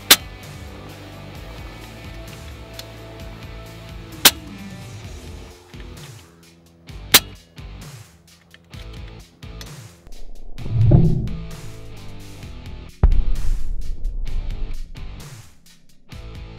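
Guitar background music, with three sharp shots from a PCP air rifle: one at the very start, one about four seconds in and one about seven seconds in. The music gets louder in the second half.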